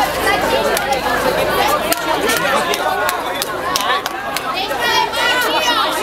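Several people talking at once, their voices overlapping in busy chatter, with scattered sharp clicks.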